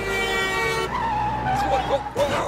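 Car braking hard with its tyres screeching, a cartoon sound effect: a sustained high squeal that wavers and sinks slightly in pitch in its second half.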